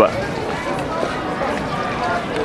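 Background voices of several people talking at once, over street noise.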